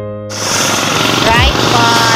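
Electric piano background music breaks off about a quarter second in. A hard cut brings in loud outdoor noise: wind buffeting a phone microphone, with voices talking about a second in.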